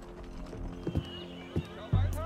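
A few horse hoofbeats clopping as a carriage draws to a halt, and a horse whinnying from about halfway through, over soft background music.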